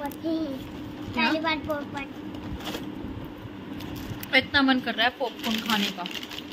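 A child's voice speaking in two short stretches, about a second in and again near the end, over a steady low hum.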